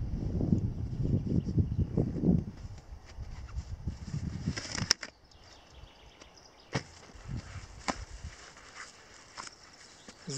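Nylon backpack and gear being handled as items are unstrapped from the pack: fabric rustling and scraping, heaviest in the first couple of seconds, then a few separate sharp clicks of straps and clips.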